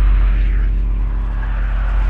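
Loud, deep sustained rumble with a steady low hum under it: a film sound-design drone that swells slightly near the end.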